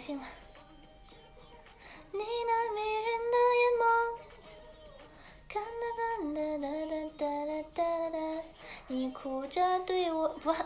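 A young woman singing solo in long, steady held notes: one phrase about two seconds in, a second from about five and a half seconds in.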